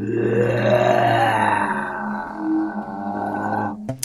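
Electronic sci-fi drone: a steady low hum under a tone that glides slowly upward, cutting off suddenly just before the end.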